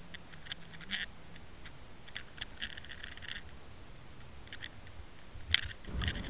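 Muffled underwater sound picked up by a camera submerged on a fishing line: quiet, with scattered faint clicks and short scratchy ticks, and one sharper click near the end.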